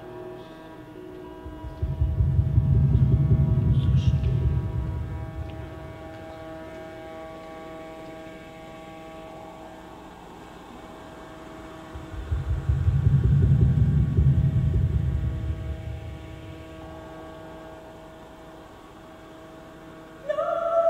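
Electronic drone of steady held tones, with a deep low rumble that swells up and fades away twice, each swell lasting a few seconds.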